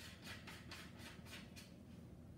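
Faint, quick scraping strokes, about four a second, of a 37 mm wide-angle lens being screwed into the threaded lens mount of an iOgrapher iPad case. The strokes stop shortly before the end.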